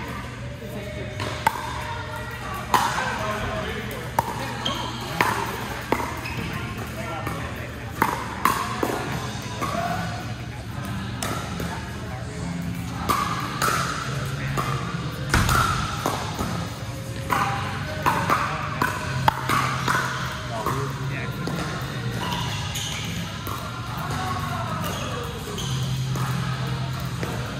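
Pickleball rally: hard paddles popping a plastic ball, with ball bounces, in sharp clicks at irregular intervals that echo in a large hall. Background music and voices run underneath.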